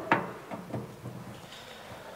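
A welding cable's plug pushed into a terminal socket on the front of a Telwin Eurarc 520 AC welding machine: one short click at the start, a couple of faint knocks of handling, then quiet room tone.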